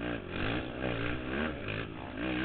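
Race quad (ATV) engine heard from on board, its revs climbing and falling back about four times in quick succession as the throttle is worked.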